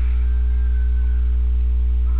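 Steady, loud electrical mains hum in the recording: a low buzz with a row of higher overtones above it. A faint thin high tone sounds briefly near the start and fades after about a second.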